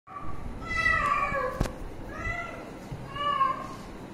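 A cat meowing three times: one call of about a second that drops in pitch at its end, then two shorter meows. A sharp click is heard between the first and second meows.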